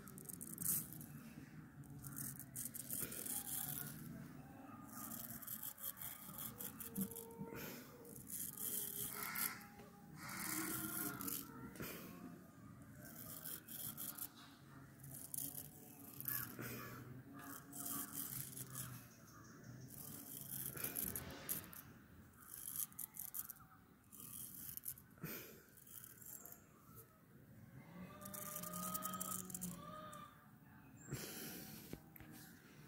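Double-edge safety razor scraping over a lathered scalp and cutting through hair, in many short, irregular strokes.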